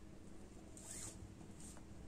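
Faint rustle of a bead being slid onto a pair of macrame cords: a soft sliding rasp about a second in and a shorter one just after.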